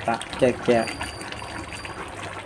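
Chicken and potato curry simmering in a pan on a gas stove, a steady bubbling hiss.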